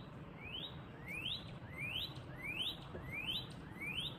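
Male northern cardinal singing a series of clear rising whistled notes, a steady "whoit, whoit" repeated about six times, roughly one and a half notes a second.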